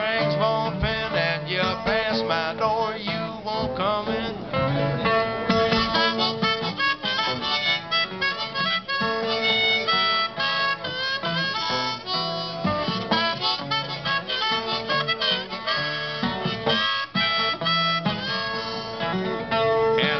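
Solo acoustic guitar keeping a steady rhythm while a harmonica plays an instrumental break over it, its notes held and bent.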